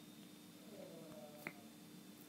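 Near silence with a faint steady hum, and a single sharp click about one and a half seconds in.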